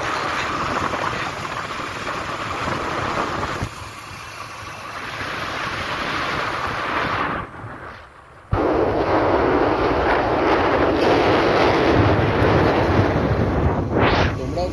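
Wind rushing over the microphone of a phone carried on a moving motorcycle, with road noise mixed in. The rushing nearly drops out for about a second just past the middle, then comes back louder.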